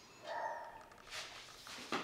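A faint, short animal whine, one steady high tone of about half a second near the start, followed by soft rustling.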